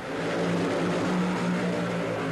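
Two supercharged, nitromethane-burning Top Fuel dragster engines launching off the line together and running at full throttle down the track: a loud, dense, steady blare that comes in sharply at the start.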